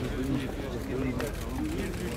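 Indistinct chatter of several people talking at once, with scattered clicks and rustles.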